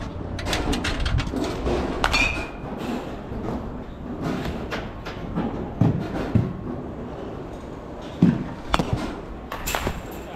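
Batting-cage arena noise: scattered sharp clicks, clanks and knocks, with a brief metallic ring about two seconds in and a few dull thuds later, over a steady background. The cluster of clicks in the first second comes as tokens are fed into the cage's coin box.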